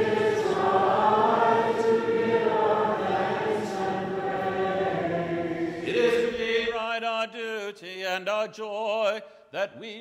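Congregation singing a short liturgical response with organ accompaniment. The singing and organ stop about seven seconds in, and a single man's voice begins chanting.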